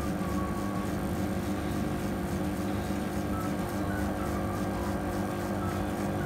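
Bubble Magus QQ1 hang-on-back protein skimmer running with a steady low hum and a faint hiss of water and air, its regulator's air hole held covered so it primes and starts to foam.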